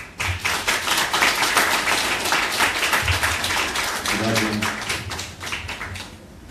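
Small audience applauding. The clapping starts abruptly, is fullest in the first couple of seconds, then thins out and fades toward the end.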